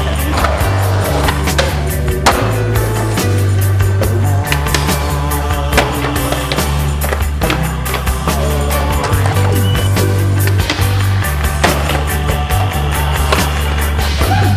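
Music with a steady low bass line under a skateboard's sounds: urethane wheels rolling on concrete and the board's sharp clacks and impacts as it pops and lands on ledges and rails.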